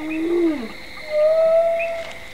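Two long, pitched moaning sounds: a low one that rises slightly and then falls away in the first half-second, then a higher, steady one through the second half.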